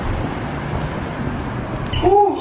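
A steady, loud rumbling noise, heaviest in the low end, that starts abruptly.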